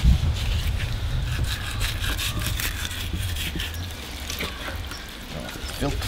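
A filleting knife scraping faintly as it is worked along between the skin and meat of a gummy shark fillet, over a steady low rumble.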